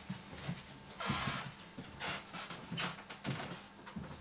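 About four short, breathy puffs of air spaced under a second apart, over a faint steady low hum, as the player readies the reeds of the double pipes before playing.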